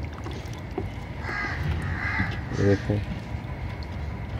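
A bird cawing twice in the background, the calls about a second apart, over a low steady rumble; a man says a short word near the end.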